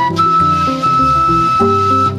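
A side-blown wooden flute holds one long, steady high note of about a second and a half, over plucked kora and electric bass lines in West African Mandingue music.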